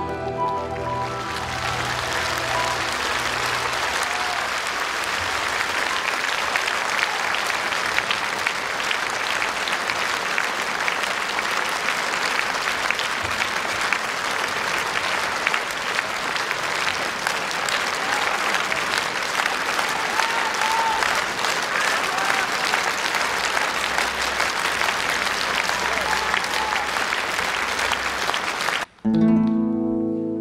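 A large audience applauding steadily at the end of a song, as the last notes of the music die away in the first second or two.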